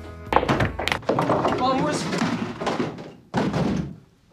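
Film soundtrack: a sharp knock or thunk about half a second in, then music and voices together.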